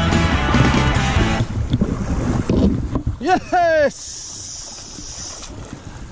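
Rock music that cuts out about a second and a half in, giving way to wind and river-water noise. Just after halfway there is a two-part excited shout, the pitch rising then falling, from a fly angler playing a fish.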